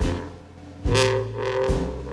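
Traditional jazz band playing a slow blues: low held notes under struck beats that land about once every second.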